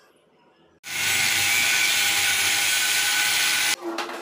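Stick (arc) welding on steel square tubing: the electrode's arc gives a loud, steady, hiss-like noise with faint steady whine tones. It starts about a second in and cuts off abruptly near the end.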